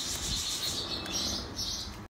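Birds chirping: a few short, high calls scattered across the two seconds.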